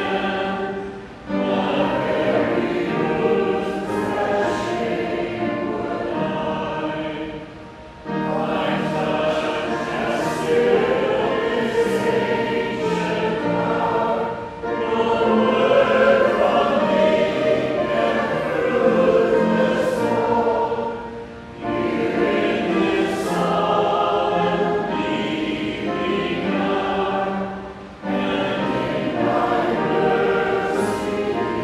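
A congregation singing a hymn together, many voices at once. The lines run about six or seven seconds each, with short breaks for breath between them.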